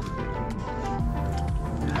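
Background music: held notes changing in pitch over a light, steady beat.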